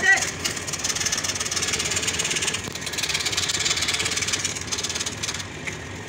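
Scroll saw cutting a curved line through a wooden board: a steady, fast rasp of the reciprocating blade, easing off just before the end.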